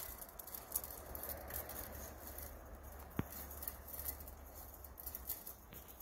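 Faint scraping and ticking of 12 gauge steel wire being fed by hand through a Gripple wire joiner, with one sharp click about three seconds in, over a low steady rumble.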